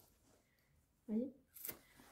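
About a second of near silence, then a short syllable from a woman's voice and a brief rustle of a canvas tote bag being handled.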